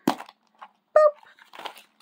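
White plastic Zuru Mini Brands Fashion capsule ball snapping open with a sharp crack, followed by the crinkle of its wrapped contents being tipped out, with a short pitched squeak about a second in.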